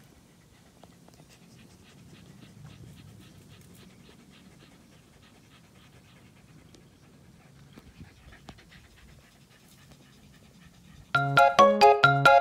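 A Shiba Inu panting quietly in short, quick breaths. About a second before the end, a loud, bright music jingle cuts in.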